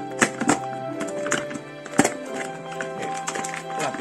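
Background music with held notes, over which come a few sharp crackles and clicks as a thick plastic mailer bag is cut and handled with a box cutter, the loudest about a quarter second in and at two seconds.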